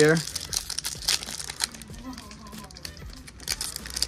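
Foil wrapper of a Pokémon booster pack crinkling and crackling in the fingers as its crimped top edge is worked open.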